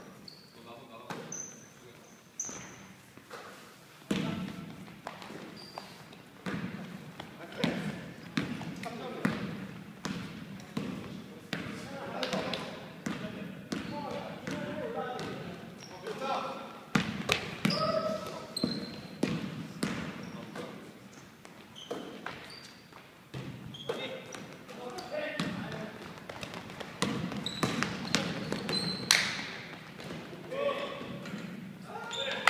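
Basketball being dribbled and bounced on a wooden gym floor with repeated sharp thuds, and sneakers squeaking in short high chirps. Players call out to each other now and then, in a large hall.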